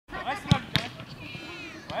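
A football kicked twice in quick succession: two sharp thuds about half a second and three-quarters of a second in, with voices calling around them.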